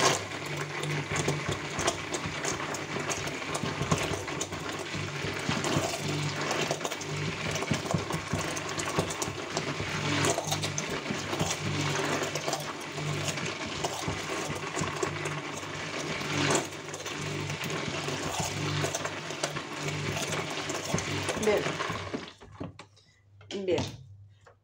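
Electric stick (immersion) blender running steadily in a plastic bucket of raw soap batter made from lard, sunflower oil and lye, mixing in the freshly added dishwashing liquid. The motor hum and the churning of the batter cut off suddenly near the end.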